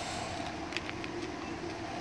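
Steady low hum of a running pellet grill, the Green Mountain Grills Davy Crockett's fan, with a few faint ticks just before the middle.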